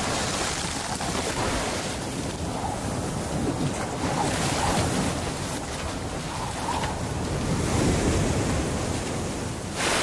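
Storm-at-sea sound effect: heavy surf and wind, with a louder crash of surf just before the end.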